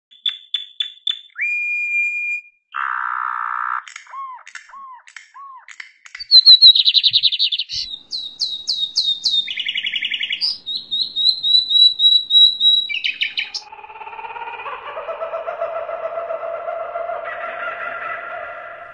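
A run of varied bird calls one after another: a few quick chirps, a held whistle, buzzy notes, small falling notes, then loud high trills, ending in a longer layered call over the last few seconds.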